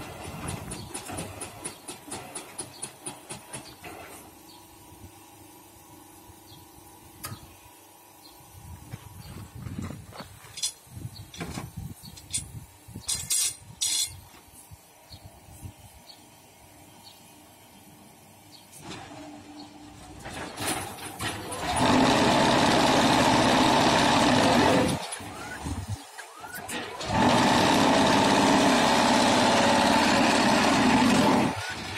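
QT4-18 automatic hydraulic block machine running its automatic cycle. It starts with a rhythmic rattle of about four beats a second for some four seconds, then goes quieter with scattered clanks and clicks of moving parts. In the last third come two loud, steady spells of machine noise, each about three seconds long.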